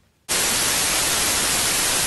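Television static: after a brief silence, a steady hiss of white noise starts suddenly about a quarter second in and holds at an even level.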